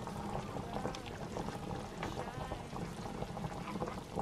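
A pot of pork-bone broth bubbling at a boil, with liquid splashing and dripping as a mesh skimmer lifts the foam off the surface.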